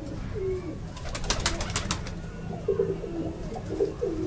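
Domestic pigeons cooing in short, low calls several times, with a second-long run of sharp rustling clicks near the middle.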